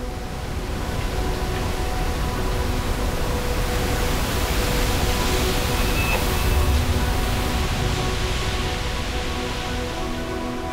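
A sustained, low music drone under a loud, rushing roar of storm surf and wind that swells to its loudest around the middle.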